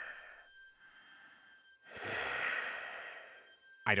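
Slow, heavy breathing on the other end of a telephone line: a breath fading out at the start, a fainter one about a second in, then a longer, louder exhale lasting about a second and a half.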